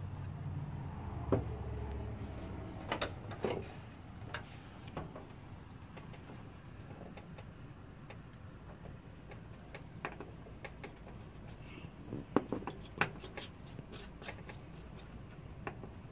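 Soldering work on a TV's LED backlight strip connector: faint scattered clicks and small taps of a soldering iron tip and thin wire against the connector pins, with a quick run of sharper clicks near the end. A low hum is heard in the first two seconds or so.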